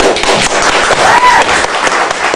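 Audience applause: loud, dense clapping, with a short rising-and-falling tone about a second in.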